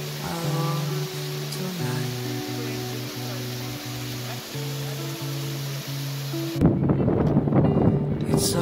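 Background music: an instrumental stretch of a slow pop song, held notes stepping from one to the next. Near the end a loud rushing noise comes in and covers it.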